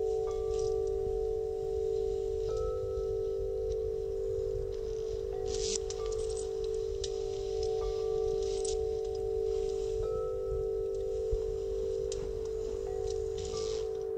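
Soft chime tones ringing over a steady low hum, with a new, higher note coming in every couple of seconds and faint crackles in the background.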